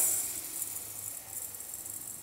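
Raw rice grains poured from a bowl into a stainless steel pot, a rattling hiss that is loudest at the start and fades as the stream thins.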